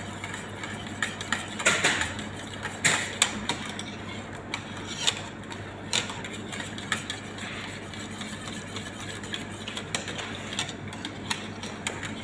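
Wire whisk stirring melted chocolate and milk in a large stainless-steel pot while butter melts into it, the metal wires scraping and clicking against the pot at irregular moments.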